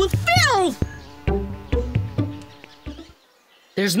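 Cartoon buzzing of a small flying bug's wings, over light background music that fades out near the end.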